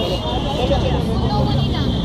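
Background voices of several people talking over a steady street hum, with a thin high-pitched whine running under it.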